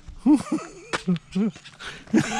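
A person laughing in a few short, pitched bursts.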